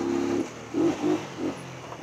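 Honda CG 125 Cargo's single-cylinder four-stroke engine running steadily under way, then the throttle closes less than half a second in and the engine note drops and goes quieter as the bike slows. A few short, louder sounds follow over the next second.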